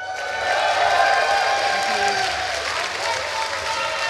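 Audience applauding, with a few held voices mixed into the clapping. The applause swells over the first second and then holds steady.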